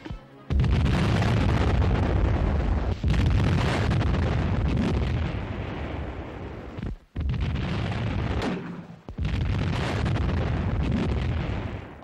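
Battle noise: a continuous din of gunfire and explosions in four long stretches, each cutting in and out abruptly.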